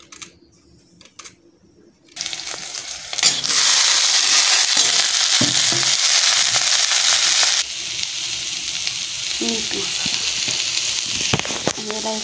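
Sliced bitter gourd frying in hot oil in a steel pan, sizzling loudly from about two seconds in, stirred with a metal spoon; the sizzle eases a little past the middle. Before it starts there are a few faint clicks.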